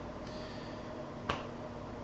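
Quiet room tone with a single sharp click a little past halfway through.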